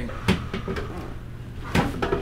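A chiropractic adjustment: two short, sharp knocks, one just after the start and a louder one near the end. They are the thrust of the chiropractor's weight down through a patient lying face up on a padded adjusting table, with arms crossed over the chest, and the crack of the upper-back joints.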